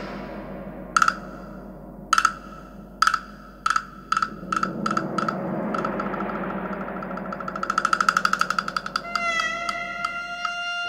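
Recorded music: a single high, bright percussive note struck over and over, speeding up from about one stroke a second into a fast roll that swells and then fades. Near the end a ringing sustained tone enters, over a low steady background.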